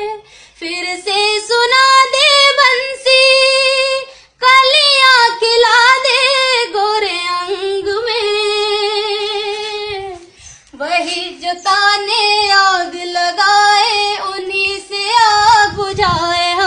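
A woman singing unaccompanied, holding long wavering notes with vibrato and gliding between them, with brief pauses for breath.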